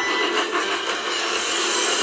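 Steam locomotive sound effect from an animated show: a steady rushing, hissing noise of the engine running fast into a station.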